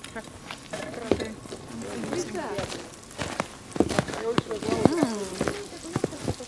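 Food sizzling in a pan on a wood-fired brick rocket stove, with scattered sharp clicks of a utensil against the pan.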